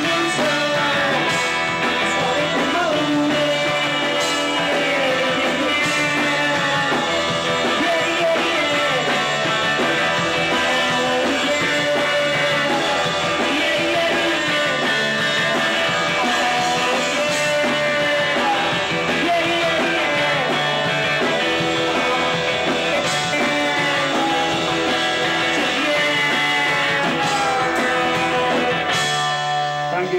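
Live indie rock band playing a song: electric bass, electric guitar and drum kit with a male singer, loud and steady until the song breaks off near the end.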